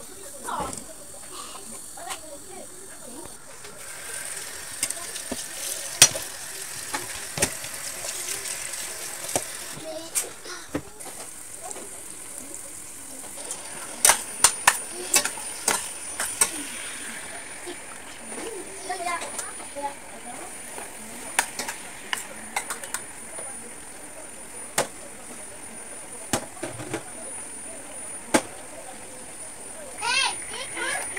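Repeated sharp clinks and knocks of a utensil against a stainless-steel cooking pot as chopped greens are stirred in it. A steady faint hiss of cooking sets in about four seconds in, with voices in the background.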